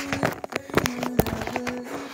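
Quick, irregular knocks and thumps from a person moving about and handling a phone camera, over a steady low background tone.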